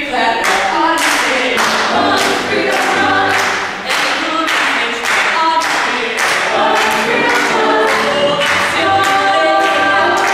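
A vocal ensemble singing an upbeat gospel-style show tune, with the singers clapping their hands on the beat, about two claps a second.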